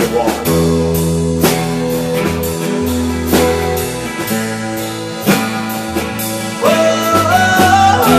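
Acoustic guitar strummed along with a keyboard holding low bass notes and chords, the bass note changing every second or so. A man's singing voice comes in near the end.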